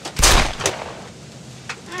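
A single loud gunshot bang about a quarter second in, lasting under half a second, followed by a short click: a gunshot sound effect standing in for the guard being shot.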